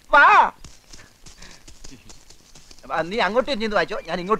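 A voice making loud wavering calls, pitch sweeping up and down, just after the start and again from about three seconds in, with faint clicking in the quieter stretch between.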